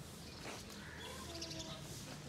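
Small birds chirping faintly over quiet outdoor background noise, picked up by a smartphone's video microphone.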